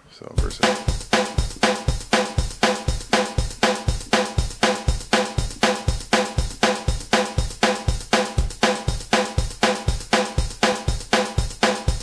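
Boss Dr. Rhythm DR-3 drum machine playing a short programmed drum pattern at 120 BPM. It starts just after a button press, about a third of a second in, and runs as an even, steady beat of about four hits a second.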